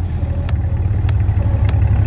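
The V8 engines of a Chevrolet Corvette Stingray and a Ferrari F8 Tributo idling at the start line, a steady deep rumble, staged and waiting for the launch.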